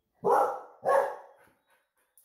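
A dog barking twice, the barks a little over half a second apart, each trailing off quickly.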